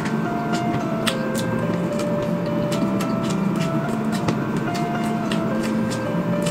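Eating sounds: a spoon scooping soft cake and chewing, heard as scattered short clicks over quiet background music made of held notes that change pitch every second or so.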